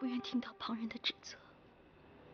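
A woman's voice speaking softly, close to a whisper, in a few short breathy phrases over about a second and a half.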